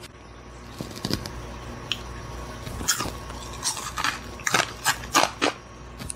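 A dried Asian forest scorpion being bitten and chewed: a few crisp crunches, then a quicker, louder run of them over the last three seconds.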